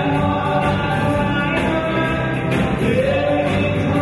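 Live country-rock band playing: a man singing lead over electric guitars and drums, with steady full-band sound and no breaks. The room recording is of poor quality.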